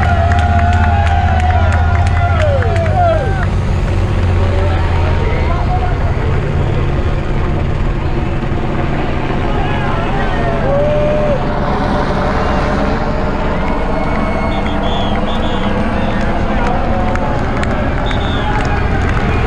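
Motorcycles of a bike-race convoy riding past on a mountain road, their engines a steady low rumble, with roadside spectators shouting and calling out over them.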